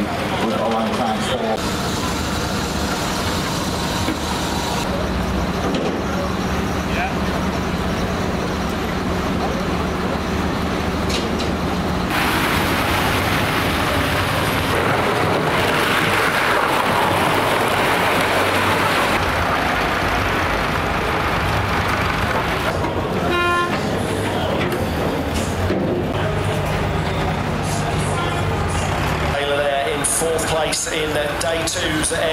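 Vehicle engines running steadily among wrecked banger race cars, louder and noisier for several seconds mid-way. A short horn toot sounds about two-thirds of the way through.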